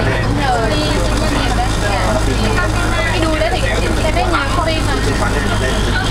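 Steady low rumble of a moving bus, heard from inside the cabin, under continuous chatter from the passengers.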